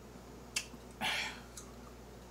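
A peeled grapefruit being pulled apart by hand: a sharp click, then about half a second of wet tearing as the flesh and membrane separate, and a faint tick after it.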